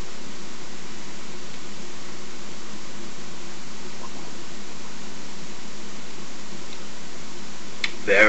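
Steady background hiss of room noise, even and unbroken, with no distinct sounds standing out.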